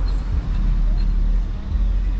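Steady low rumble of road traffic from a queue of cars and a truck stopped in a traffic jam.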